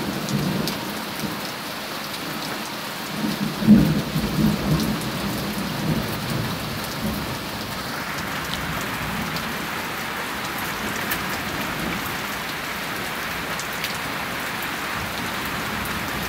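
Heavy rain pouring steadily in a thunderstorm, with a low rumble of thunder that swells about three seconds in, peaks near four seconds and dies away by about six seconds.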